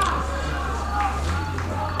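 Faint shouts of footballers carrying across a near-empty ground, over a steady low hum from the field microphone.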